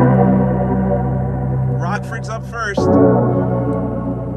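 Electronic music with a held deep bass note and sustained chords, played loud through 6x9 coaxial speakers for a bass-output comparison. From about two seconds in, a wavering voice-like sound rises over it for under a second, then the held chords resume.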